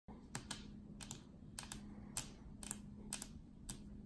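Long fingernails tapping on a hard tabletop: sharp, irregular clicks, often in quick pairs, about a dozen in four seconds, over a faint steady hum.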